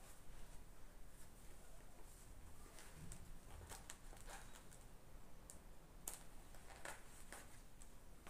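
Faint, scattered crisp ticks and rustles of hand-sewing, with needle and thread tacking stiff crinoline onto a fabric cap; they come more often in the second half.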